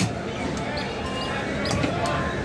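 Knife knocking against a wooden log chopping block while cutting fish, with one sharp knock at the start and lighter taps near the end.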